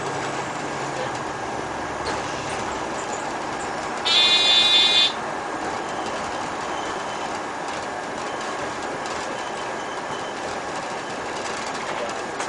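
Steady road and running noise inside a bus driving along a street. About four seconds in, a loud high-pitched beep lasts about a second.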